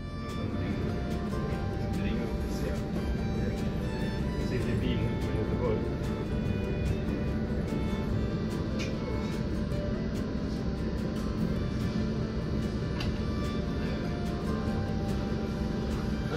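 Steady low rumble inside a Tågab X10 electric multiple unit as it rolls into a station, with indistinct voices and background music over it.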